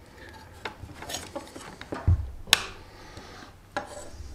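An alligator clip and its cable being handled and set down on a wooden workbench: a few light clicks and knocks, with a dull thud about two seconds in followed by the sharpest click.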